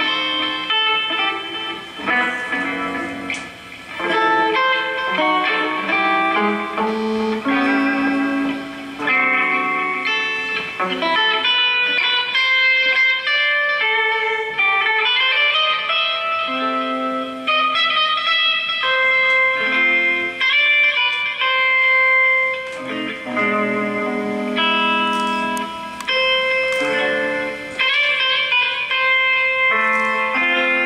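Solo electric guitar playing a slow melody with chords, with no drums or bass. About halfway through, a note slides upward in pitch.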